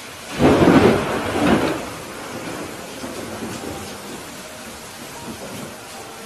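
Steady rain with a loud clap of thunder about half a second in, rumbling in two swells and dying away after about a second and a half.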